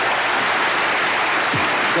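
Studio audience applauding steadily, with a man's voice starting to speak over it near the end.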